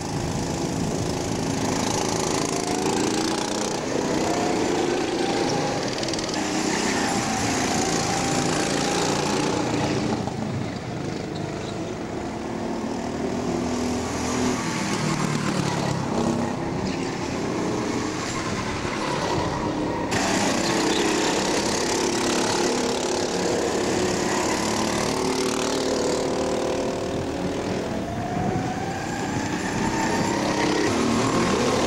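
Several racing go-kart engines running on track, their pitch rising and falling as they accelerate and brake through the corners, with more than one kart heard at once.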